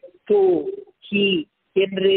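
Only speech: a man's voice lecturing in short phrases with brief pauses between them.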